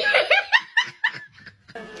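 A person laughing in a rapid run of short bursts that stops just over a second in.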